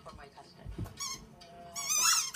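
Rubber squeaky toy ball giving short, high-pitched squeaks as a dog catches it in its mouth: one brief squeak about halfway through, then a louder one with falling pitch near the end.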